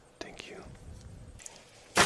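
Soft whispered speech, then a sudden loud burst of noise right at the end.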